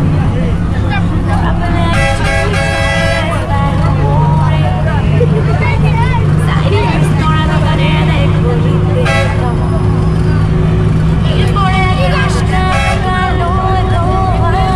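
Bus engine droning steadily, heard from inside the moving bus's cabin, with the horn sounding in short steady tones a few times.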